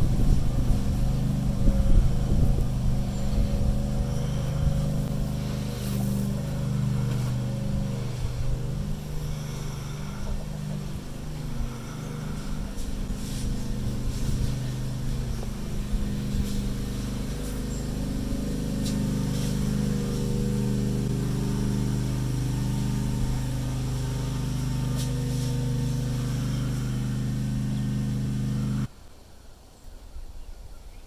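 A vehicle engine idling steadily, with a low even hum, and stopping abruptly about a second before the end.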